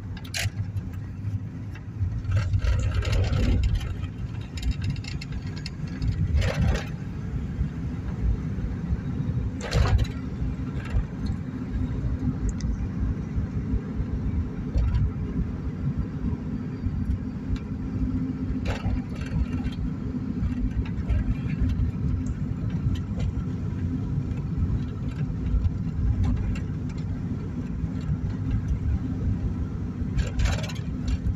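Road and engine noise heard inside a moving car: a steady low rumble, louder for a stretch early on, with a few sharp knocks now and then, the loudest about ten seconds in.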